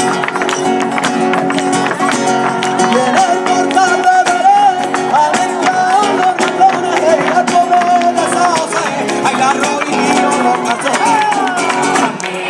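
Live flamenco-style Christmas song: a lead voice sings a wavering, ornamented melody over acoustic guitar, with a quick beat of sharp percussive strikes running through it.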